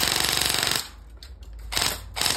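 A Zion Arms R15 airsoft electric rifle with a 25K IFRIT motor firing a very fast full-auto burst that stops about 0.8 s in, followed by two short noises near the end.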